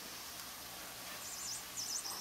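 Electronic flying-mouse toy giving a faint, high-pitched warbling squeak that starts a little over a second in.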